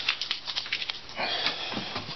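Handling noise from a wooden bowl being turned in the hands: a quick run of small clicks and taps in the first second, then a short rustle, over a faint steady low hum.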